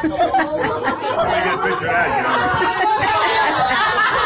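Several people talking over one another at once, a continuous jumble of voices.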